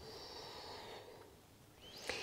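A person's soft breath, one exhale about a second long.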